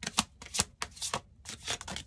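A deck of tarot cards being shuffled by hand, with a quick, uneven run of papery card slaps, about five a second.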